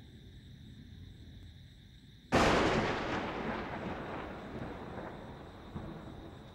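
A single sudden loud boom a little over two seconds in, dying away slowly over the next three seconds.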